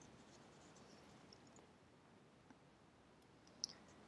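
Near silence: faint room tone, with one brief faint click shortly before the end.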